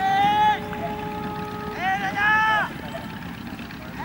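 High-pitched shouted calls from a person's voice, each one rising and falling, about two seconds apart, with a steady held tone between the first two. Wind noise on the microphone runs underneath.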